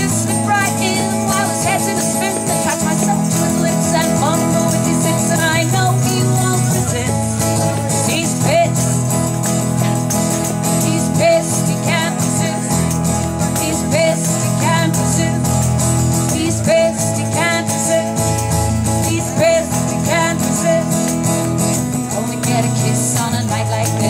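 Live acoustic song: a woman singing over a strummed steel-string acoustic guitar, with a tambourine jingling along.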